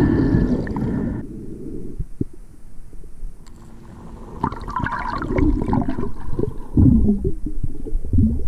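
Muffled underwater sloshing and gurgling picked up by a submerged camera, coming in irregular low surges that are loudest near the start and about seven seconds in.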